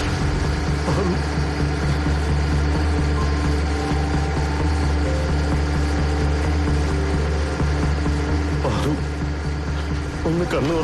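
Boat engine idling with a steady low hum.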